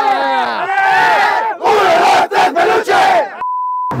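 A team in a huddle shouting a war cry together, many voices at once in two long shouts. Near the end a steady half-second beep, a censor bleep over a word.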